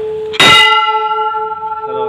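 A large hanging brass temple bell struck once about half a second in. It rings on in several clear tones that fade away over the next second and a half.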